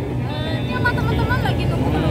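Steady low rumble of nearby road traffic, with a softer voice speaking for about a second in the middle.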